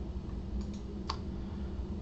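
A single small click about a second in, with a couple of fainter ticks just before it, over a low steady hum.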